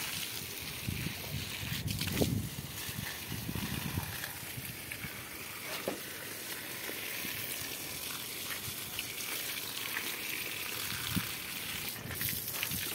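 Water from a garden hose splashing steadily onto potted plants and a concrete floor, with a few low bumps in the first few seconds.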